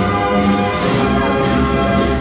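Carousel band organ playing a tune from a paper music roll, with many sustained notes over a steady, repeating bass beat.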